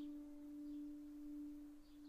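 Soundtrack music: a single sustained piano note, struck just before, ringing on and slowly fading.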